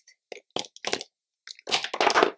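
Plastic liquid-lipstick tubes clicking against each other as they are handled and set down: a few short clicks, then a louder clatter near the end.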